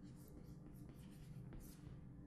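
Chalk scratching on a chalkboard in a few short, faint strokes as a word is written.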